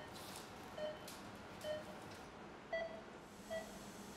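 Patient monitor beeping faintly: five short, identical beeps, a little under one per second, like a pulse tone, with faint rustling from staff handling things at the table.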